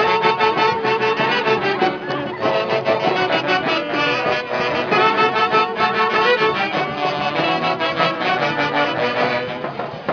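A live brass band, with saxophone among its instruments, playing a traditional dance tune.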